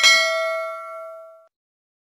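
Notification-bell ding from a subscribe-button animation: a single bright chime with several ringing tones, fading out after about a second and a half.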